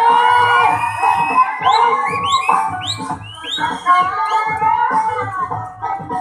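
Loud music playing for a dancer on stage, with a steady beat and a repeated swooping melody, and some crowd cheering mixed in.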